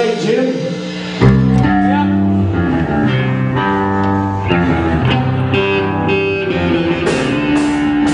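Live rock band with electric guitars and bass playing loud, the guitars and bass coming in together about a second in and holding long chords.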